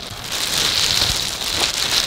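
Clear plastic bag crinkling and rustling as hands pull and handle it, getting louder about half a second in.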